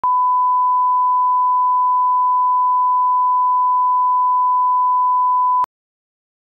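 Steady 1 kHz reference test tone, the line-up tone that goes with colour bars, held at one pitch and cutting off suddenly near the end.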